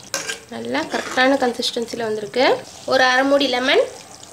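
A woman's voice talking, with a ladle stirring thick chana masala gravy simmering in a steel pot underneath.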